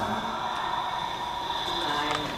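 A steady, sustained drone of held tones, one high and one lower, with no voice over it.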